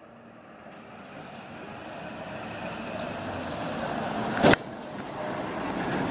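A road vehicle approaching, its noise growing steadily louder throughout, with one sharp click about four and a half seconds in.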